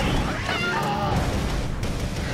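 A high, wavering cry that falls in pitch, starting about half a second in and lasting under a second, over a low rumbling trailer score.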